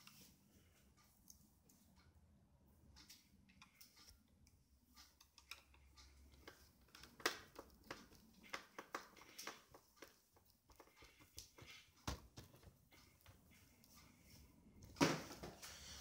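Faint, irregular ticks and scrapes of a small screwdriver turning a screw into a laptop's plastic screen bezel, busier in the middle, with a sharper click about twelve seconds in and louder handling noise near the end.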